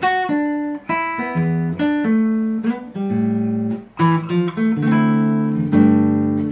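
Taylor 214ce-N nylon-string acoustic guitar, fingerpicked, playing the song's interlude chord progression (GM7, Em7, Am7, D9 to G). It is a steady run of plucked chords and single notes, each left to ring into the next.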